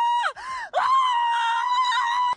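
A voice screaming a high-pitched "ah": a short held cry that breaks off, then a longer one held steady at one pitch.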